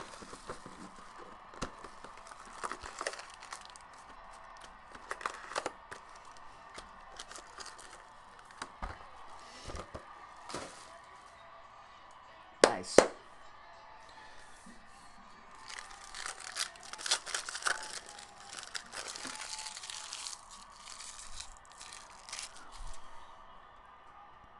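Foil trading-card pack wrapper being torn open and crinkled by hand, with the cards handled: scattered snaps and crinkles, one sharp crack about halfway through, and a longer bout of crinkling a few seconds later.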